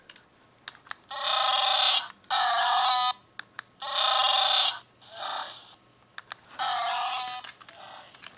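Electronic sound effects from the Transformers Millennium Falcon toy's built-in sound chip, played through its small speaker: five tinny bursts of about a second each, with short clicks in the gaps between them.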